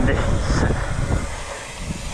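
Wind buffeting the camera's microphone, mixed with the rumble of BMX tyres rolling on the asphalt pumptrack, easing off about halfway through.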